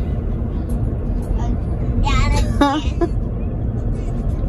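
Steady low road and engine rumble inside a moving Chevrolet SUV's cabin, with a short spoken "huh" about two and a half seconds in.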